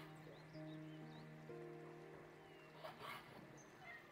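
Quiet background music with long held notes, with a single knife stroke on a wooden cutting board about three seconds in.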